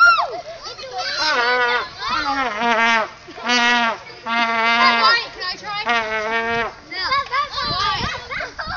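Children shouting and calling out, with several drawn-out high calls held at a steady pitch in the middle of the stretch.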